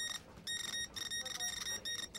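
News-style background music: a high electronic tone pulsing in quick repeated beeps, with no voice over it.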